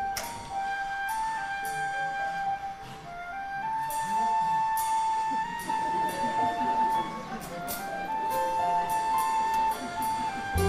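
Live pit orchestra playing an instrumental dance passage of a slow show tune: a high sustained melody with repeated bright, ringing percussion strikes.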